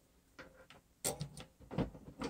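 Light clicks and knocks of hand tools being handled on a workbench: a few small ticks, then a louder cluster about a second in and a few more near the end.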